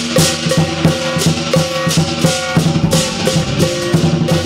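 Lion dance percussion band playing: a large lion drum beaten in a fast, steady rhythm, with a struck gong ringing and pairs of hand cymbals crashing over it.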